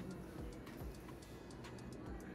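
Faint, irregular light clicks of metal dental instruments during a wisdom tooth extraction, several close together near the end, over a low steady hum.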